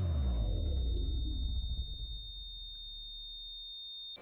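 Dramatic film sound effect: a deep bass tone that drops in pitch over the first second and then hangs on and fades, under a steady high-pitched ringing tone.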